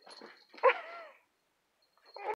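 A domestic cat gives one short meow about half a second in, falling in pitch at the end, just after a brief rustle as it springs up.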